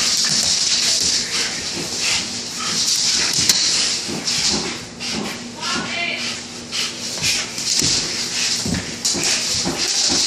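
A pit bull growling and breathing hard through its nose as it tugs on a broom head, with irregular scuffs and knocks of the broom and paws on a wood floor. A short pitched cry or laugh comes about halfway through.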